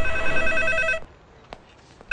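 Electronic office desk telephone ringing: a rapid warbling ring lasting about a second, then a pause between rings.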